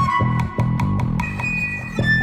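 Instrumental rock passage: bass guitar and guitars over drums keeping a quick, steady beat, with a long held melody note riding on top.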